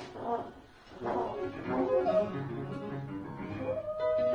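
Free-improvised jazz on trombone, electric guitar, piano and drums: a dense, unmetered mix of held and sliding notes, thinning out briefly about half a second in before the group comes back in full.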